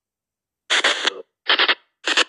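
SP Spirit Box 7 phone app sweeping through radio frequencies and playing chopped bursts of radio sound. Silent at first, then two short bursts, the first about half a second long and the second shorter, each starting and stopping abruptly.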